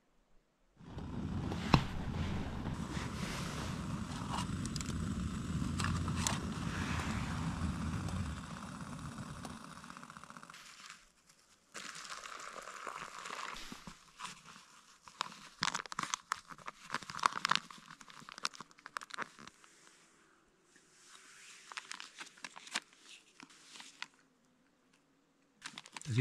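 A steady rushing hiss with a low rumble for about the first ten seconds, fading out, then a dehydrated-meal pouch being crinkled, torn open and stirred, in irregular paper rustles and crackles.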